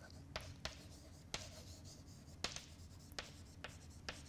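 Chalk writing on a blackboard: faint taps and scrapes of the chalk, about six short clicks spread over a few seconds.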